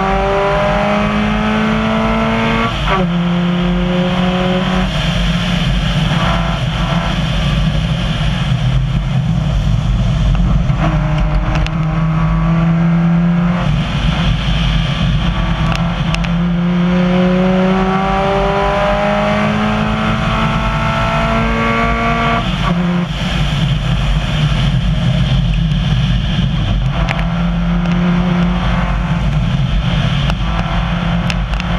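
Subaru rally car's flat-four engine heard from inside the cabin, pulling hard on a gravel road, its pitch climbing under acceleration and dropping sharply at each upshift several times. Under it runs the steady hiss and rattle of gravel under the tyres.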